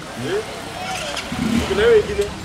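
Voices of people talking in the background of an open-air market, with a low vehicle rumble building toward the end.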